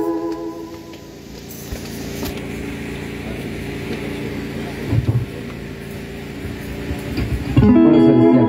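Church-band electronic organ (keyboard) music: a held chord with a slow vibrato dies away in the first second. A quieter stretch of faint low sustained tones follows, and near the end a new loud organ chord comes in.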